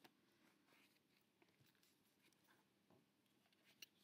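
Near silence, with faint rustles of card paper as a gusset pocket on a scrapbook album is handled, and one small click near the end.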